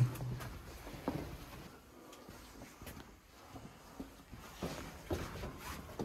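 Faint, scattered scuffs and knocks of footsteps and gear moving over rock in a narrow cave passage, with one knock about a second in and a few more near the end.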